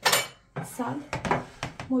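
A metal spoon set down with a short, sharp clatter, followed by a woman speaking.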